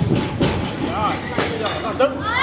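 Barbells and weight plates in a busy weightlifting training hall, knocking and clanking three times, sharp and echoing, over a background of voices.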